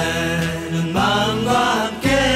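Music: a Korean Christmas pop song, a voice singing over instrumental accompaniment.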